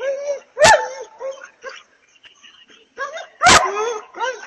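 A dog barking: two loud, sharp barks about three seconds apart, with softer pitched calls between them.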